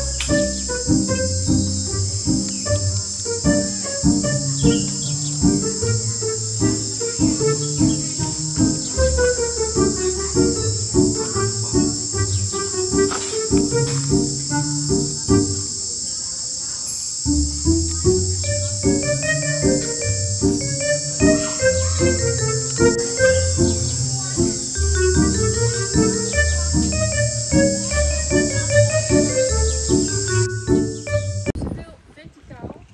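A steady, shrill chorus of insects, crickets or cicadas, buzzing without pause, over background music: a melodic line of stepping notes with a steady beat that breaks off briefly about halfway through.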